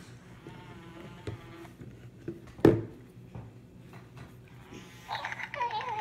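A single sharp knock about two and a half seconds in. Then, from about five seconds in, a Hatchimal Penguala toy's electronic voice: pitched chirps that warble up and down.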